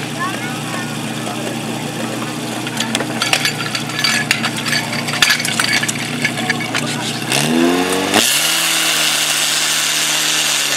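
Portable fire pump's engine running steadily while metal hose couplings clack against it, then revving up about seven seconds in, rising in pitch, and holding at high revs with a strong hiss as it drives water into the hoses.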